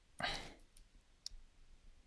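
A short rush of noise near the start, then a single sharp click just over a second in, typical of a pen stylus tapping on a tablet screen.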